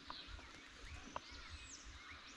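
Faint bird calls: scattered short chirps and quick downward-sliding whistles over low background noise.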